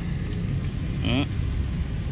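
Steady low rumble, with one short spoken 'ừ' about a second in.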